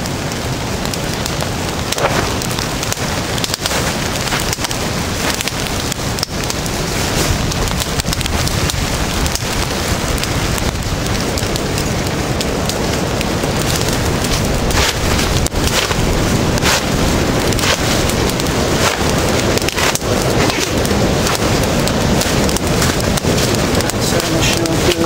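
Wood campfire crackling, with a steady hiss and frequent sharp pops and snaps.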